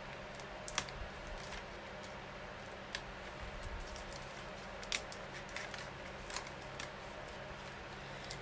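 Die-cut vellum pieces being popped out of their sheet by hand: a few faint, scattered paper clicks and crackles, about a second or two apart.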